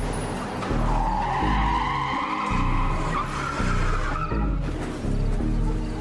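Hip hop beat with a car tire-screech sound effect laid over it: a steady squeal lasting about four seconds that cuts off abruptly, over deep bass.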